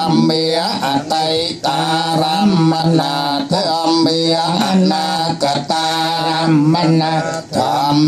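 Theravada Buddhist monks chanting together into hand microphones, male voices held on a nearly steady pitch with short breaks for breath.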